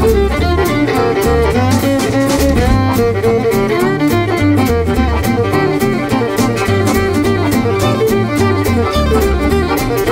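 Swing jazz band playing, with the violin prominent over a walking double bass, rhythm guitar and drums keeping a steady beat.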